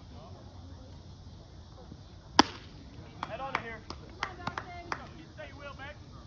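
One loud, sharp crack as a pitched baseball is hit or lands in the catcher's mitt, followed by a few sharp hand claps and shouting from players and spectators.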